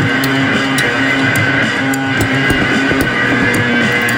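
Instrumental passage of an experimental psych rock song: sustained electric guitar with a regular sharp percussive tick.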